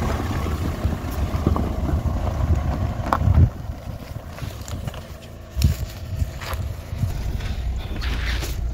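Hyundai Creta SUV driving slowly over a stony dirt track, with wind on the microphone. The low rumble swells louder twice, around three and around five and a half seconds in.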